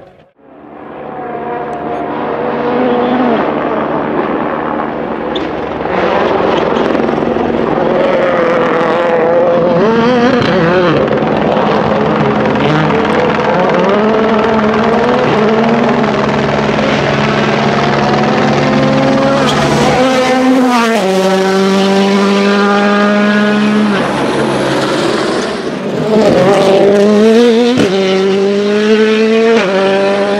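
Ford Fiesta WRC rally car's turbocharged 1.6-litre four-cylinder engine driven flat out, revving up and down again and again through gear changes and lifts. The sound fades in from silence at the start and breaks off abruptly about twenty seconds in and again near the end, each time into a steadier high-revving note.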